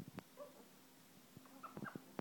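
Eleonora (medium sulphur-crested) cockatoo giving brief, quiet chirps while clambering on a wire cage, with a few faint clicks and taps from its beak and feet on the bars: a couple of taps at the start, a short call about half a second in, and a cluster of taps and chirps near the end.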